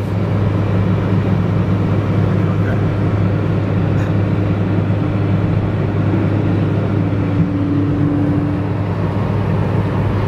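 Steady engine drone and road noise inside a Nissan Micra hatchback cruising at highway speed.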